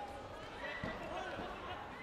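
Two dull thuds from a taekwondo bout, about a second in and again shortly after, under several voices calling out.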